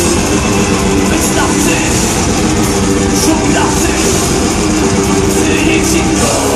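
A heavy metal band playing live in a large hall, loud and steady. Held low chords run under repeated cymbal hits.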